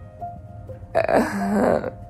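A woman's voice making a loud, drawn-out wordless sound, close to a burp, lasting nearly a second, starting about a second in. Soft background music with steady held tones runs underneath.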